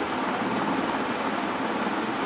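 Steady background hiss throughout, with no distinct sounds standing out.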